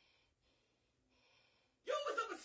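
Faint steady hiss, then near the end a person's voice breaks in suddenly and loudly, without clear words.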